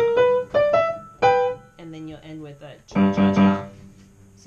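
Piano played: a short run of single notes stepping upward in the first second and a half, then, about three seconds in, three loud, low chords in quick succession.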